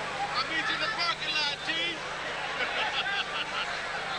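Boxing arena crowd noise with voices shouting out, once in the first two seconds and again about three seconds in.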